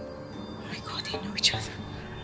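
Quiet, tense film-score music with a few short breathy, whisper-like sounds around a second in.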